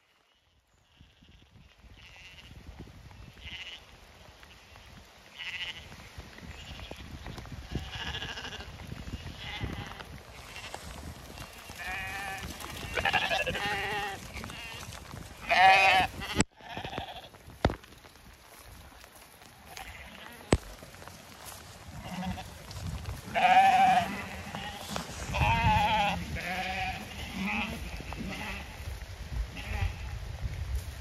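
Zwartbles sheep bleating over and over as the flock runs, with two busy stretches of calls, one in the middle and one near the end, over a steady low rumble.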